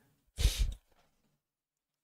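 A man's brief sigh into a close microphone: one short breath out, about half a second long.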